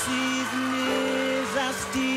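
Male vocal group singing a love song with a live band behind them, the notes held long with brief bends between them.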